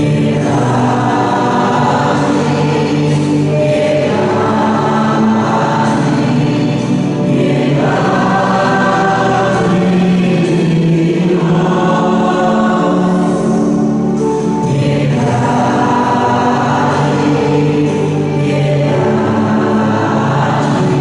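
A choir singing a church hymn together, in sustained phrases a few seconds long.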